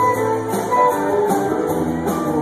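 Live rock band playing an instrumental passage with keyboards and held chords, heard through the club's PA from the crowd.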